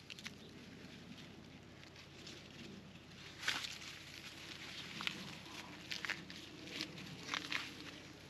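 Dry corn husks and leaves crinkling and rustling as an ear of corn is husked by hand on the stalk, in scattered short crackles from about halfway through.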